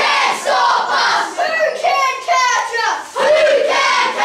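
A group of young boys shouting together, many voices at once, with a short break about three seconds in.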